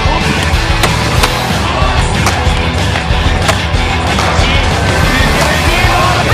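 Skateboard wheels rolling on a plywood ramp, with several sharp board clacks, over a loud rock music track.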